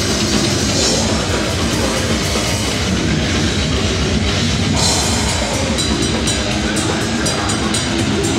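Live heavy metal band playing loud: distorted electric guitars and a drum kit, with a vocalist screaming into a microphone. A little past halfway the drumming changes to a steady run of even cymbal hits.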